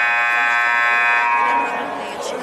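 Gymnasium scoreboard horn sounding one long, steady, high-pitched blast that cuts off near the end.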